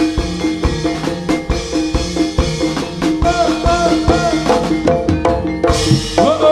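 Live jaranan gamelan music: hand drums beating a steady, busy rhythm over ringing bronze metallophones and gongs. A high melody line slides and arches between notes around the middle.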